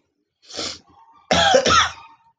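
A person coughing: a short cough about half a second in, then a louder, longer cough in the second half.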